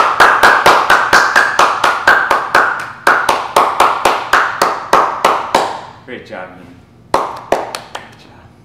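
A few people clapping by hand, about four claps a second, dying away about six seconds in, followed by a short burst of a few more claps near the end.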